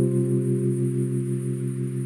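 Synthesizer music: one sustained chord held steady, with no beat.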